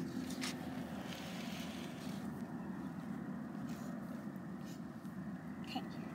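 A steady low rumble with a faint hum runs throughout, with a few faint scratchy strokes of a felt-tip marker drawing on paper.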